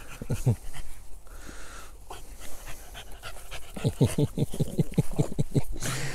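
A pocket-type American Bully puppy panting close by: two breaths soon after the start, then a quick, even run of breaths about six a second over the last two seconds.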